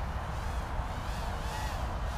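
Faint whine of the Eachine EX120 brushed hexacopter's six motors and propellers in flight, rising and falling in pitch as the throttle changes, over a steady low wind rumble on the microphone.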